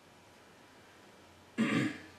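A man clears his throat once, briefly and loudly, near the end, after faint room tone.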